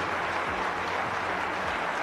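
Snooker audience applauding steadily.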